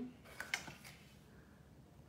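A couple of faint taps as a large card folder is set down flat on a glass-topped table, then quiet room tone.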